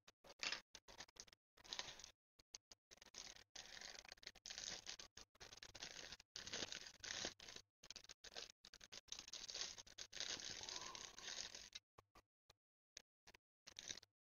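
Thin plastic bag crinkling and rustling in scattered faint bursts as it is slit with a hobby knife, torn open, and a plastic model car body is pulled out of it.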